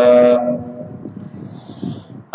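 A man's voice holding a drawn-out syllable on one steady pitch for about half a second, then a pause with only faint low background noise and a soft hiss near the end.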